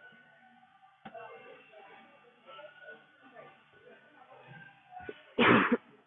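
Faint background music and low voices in a large gym. A single click comes about a second in, and a short, loud burst comes near the end.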